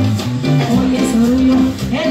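Live cumbia band playing loudly through a concert sound system, with a steady bass line and guitar.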